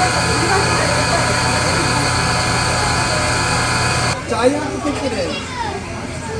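A steady hum made of several held tones, which cuts off abruptly about four seconds in. After it come people's voices and children's chatter.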